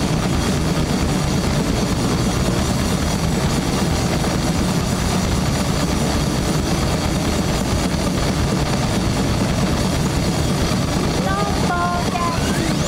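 Live band playing loud through a festival PA, a dense steady wall of drums, cymbal wash and distorted sound. A few short gliding tones come in near the end.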